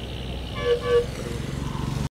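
Background vehicle noise: a steady low rumble, with a short double horn toot a little over half a second in.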